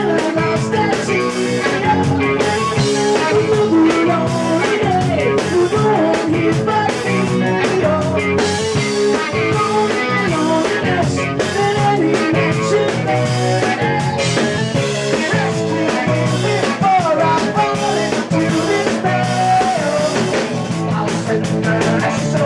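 Live rock band playing at full volume: electric guitar, electric bass and drum kit, with a sung melody over them.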